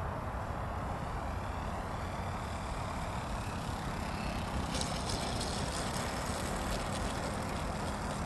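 Radio-controlled model aeroplane running faintly over a steady rush of outdoor noise as it comes in to land on grass. A scratchy crackle joins about five seconds in.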